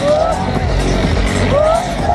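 Loud live music through a festival sound system, heard from inside the crowd, with voices close by over a steady bass.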